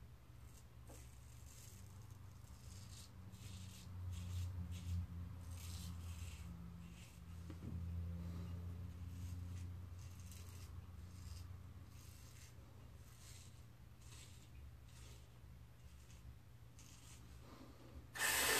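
Stainless steel Blackland Blackbird double-edge safety razor scraping through lathered stubble on the neck in a series of short, faint strokes.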